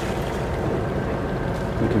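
Sailing yacht's inboard diesel engine running steadily as the boat motors along, with a low hum and water noise.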